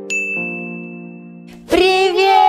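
A bright electronic ding sounds once just after the start and rings for over a second over soft sustained synth chords. Near the end a loud, wavering, voice-like sound starts abruptly.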